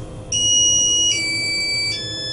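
Electronic arrival chime of a KMZ passenger lift (400 kg capacity, 1 m/s) as the car stops at a floor. It plays two steady notes, the second lower, each just under a second long, starting about a third of a second in.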